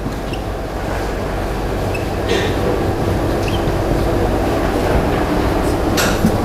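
Steady low rumble and hum of room noise that grows slowly louder. A few faint short squeaks of a marker writing on a whiteboard sound over it.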